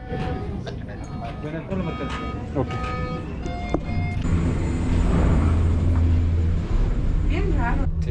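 Short electronic beeps from QR-ticket turnstile gates in a cable-car station, with clicks of the gates. About four seconds in, a loud, steady low rumble with a thin high whine takes over: the aerial cable-car system's station machinery running.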